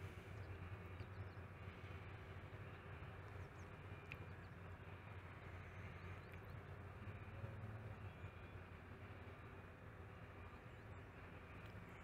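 A faint, steady low machinery hum, otherwise near silence.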